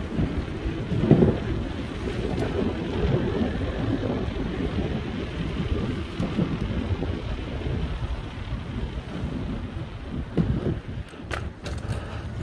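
Wind buffeting the microphone of a helmet-mounted phone: a steady low rumble with stronger gusts about a second in and again near the end.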